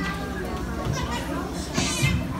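A crowd of children's voices, talking and calling over one another, in a hall, with a brief hiss near the end.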